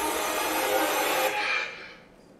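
Film trailer soundtrack played over a hall's speakers: a dense, rasping noise with held tones that drops away sharply about one and a half seconds in.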